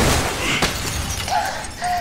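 A large pane of glass shattering with a loud crash, its fragments spraying and rattling down as the sound fades.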